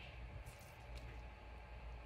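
Faint room tone with a steady low hum and a couple of soft, brief rustles.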